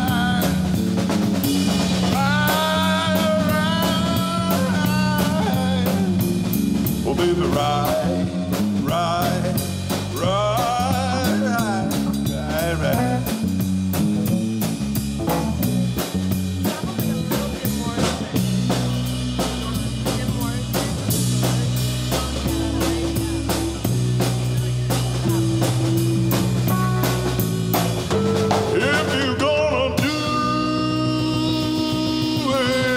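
A live blues-rock band playing an instrumental section: drum kit keeping a steady beat, with bass, keyboard and electric guitar. A lead line bends and wavers in pitch over the first half. About eighteen seconds in, the bass drops to heavier, held low notes.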